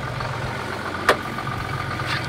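A boat's engine idling steadily, with a single sharp click about a second in.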